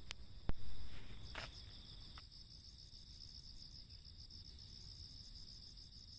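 Crickets chirring in a steady chorus at several high pitches, over a low rumble of wind on the microphone. A sharp click about half a second in.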